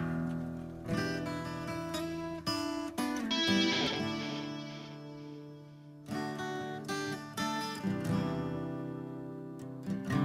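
Acoustic guitar strumming chords in a song's opening. About three and a half seconds in, one chord is left to ring and fade away, and the strumming picks up again about six seconds in.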